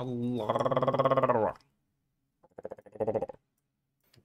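A man's drawn-out, howl-like vocal sound, one long low note held for about a second and a half, followed about two and a half seconds in by a shorter, wavering one.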